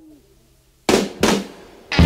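Blues-rock band recording at a break in the song. A held sung note dies away, then two loud drum strokes come about a third of a second apart, and the full band comes back in at the very end.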